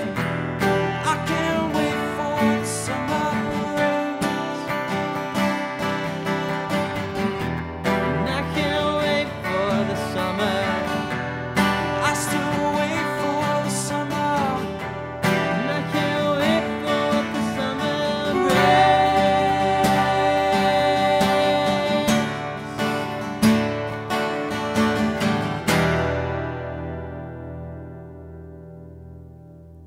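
Two acoustic guitars strumming together through the song's instrumental outro. The final chord rings out and fades away near the end.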